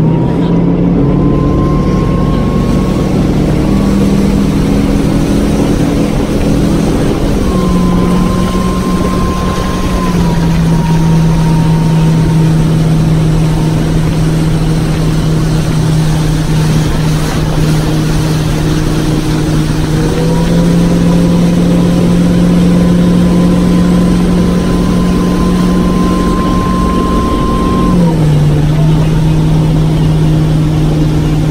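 Motorboat engine running hard while towing a wakeboarder, with the rush of wind and spray from the wake. The engine's pitch holds steady but shifts up or down a few times as the throttle is eased or opened.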